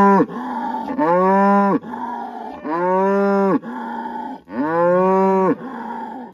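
A cow mooing repeatedly at close range: three long moos of about a second each, with the tail of another just at the start. This is the herd's lead cow calling at the gate, anxious to move now that she knows the gate is about to open.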